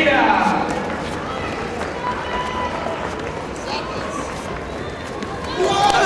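Crowd murmur and scattered voices echoing in a large hall, with a loud shout near the end as the two karate fighters close in on each other.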